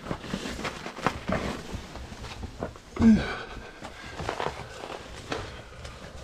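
Scuffs, scrapes and clicks of a person scrambling over a breakdown pile of lava rock, with a brief vocal sound about three seconds in.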